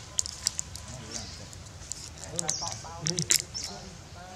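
Plastic drink bottle crackling and clicking as a young macaque handles it. About two and a half seconds in, a voice gives a quick run of repeated 'ah-ah-ah' sounds.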